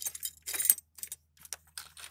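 Glass tubes and other small lab items clinking and rattling against each other as a hand rummages through a box of them: a string of short clinks, the busiest about half a second in.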